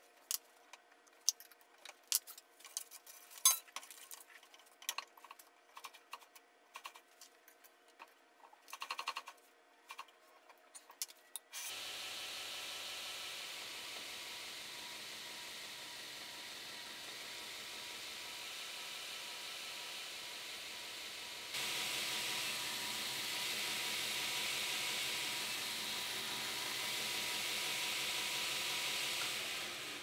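Metal parts clinking and a wrench clicking as a tracking arm and wheel are bolted onto a 2x72 belt grinder. Then the grinder starts and runs steadily, its abrasive belt running over the wheels, in reverse while its tracking is tested; partway through the run it steps up louder, as if the speed is turned up.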